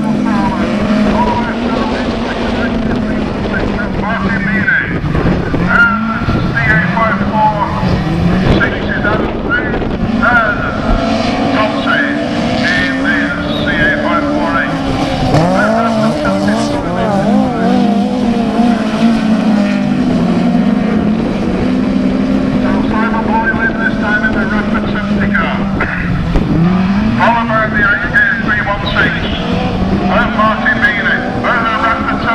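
Several autograss race cars' engines revving together as the pack races around the dirt oval, their pitches rising and falling as the cars accelerate and ease off.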